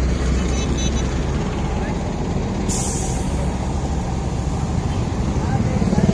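Large coach engine idling with a steady low rumble, and a short sharp burst of compressed-air hiss, as from the air brakes, a little under three seconds in.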